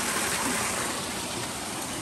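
A shallow rocky stream running over stones and small cascades: a steady rush of flowing water.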